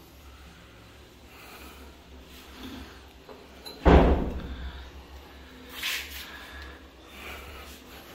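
Quiet handling sounds of a ceramic vessel sink being shifted and turned by hand on a stone countertop, with a short scrape about six seconds in.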